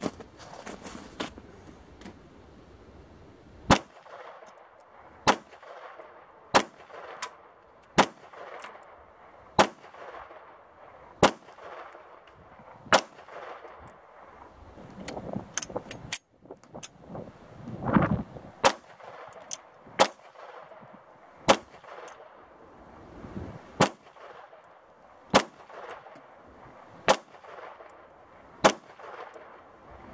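A .45 ACP pistol firing handloaded rounds: a steady string of single shots, about one every one and a half seconds, with a pause near the middle.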